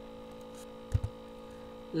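Steady electrical hum with one short click about a second in, from a computer mouse button.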